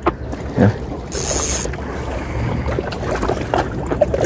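Wind buffeting the microphone as a steady low rumble, with a brief sharp hiss a little over a second in.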